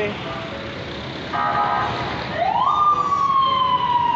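A siren wails, rising quickly a little over halfway in and then falling slowly in one long sweep, over steady street noise. Just before it comes a short, steady horn-like tone.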